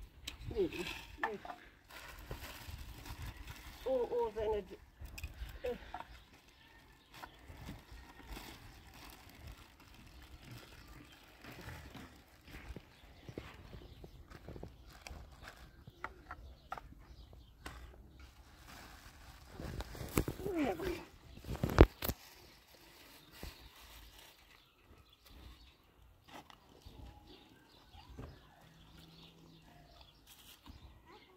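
A dog eating meat from a bowl, with faint small clicks and rustles of handling and chewing. Short voice sounds come at the start, around 4 seconds and around 20 seconds, and one sharp knock comes about 22 seconds in.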